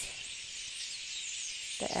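Small birds twittering in a pine wood, a steady high-pitched chorus of overlapping chirps.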